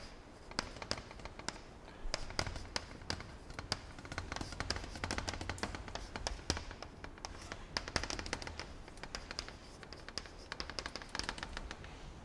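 Chalk writing on a blackboard: an irregular run of sharp taps and clicks as letters are put down, over a faint low room hum.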